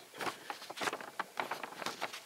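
Faint handling noise: scattered soft clicks and rustles, with no speech.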